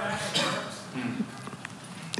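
Faint voices in a pause between louder speech, with a few light knocks or clicks.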